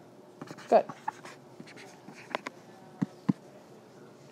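Stylus writing on a tablet screen in a small classroom: faint scratching, with two sharp taps about three seconds in, over a faint steady hum.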